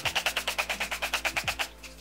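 Pump bottle of Revolution Pro Hydra-Matte fixing spray misting the face in a fast, even run of spray pulses that stops about three-quarters of the way in.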